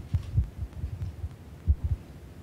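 Irregular low thumps and bumps from a lectern microphone being handled and knocked, about eight of them, with two strong ones near the start and a close pair near the end.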